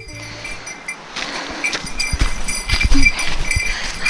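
Footsteps crunching on a snow-dusted trail, with knocks and rustles from a handheld camera and clothing; it gets louder about a second in.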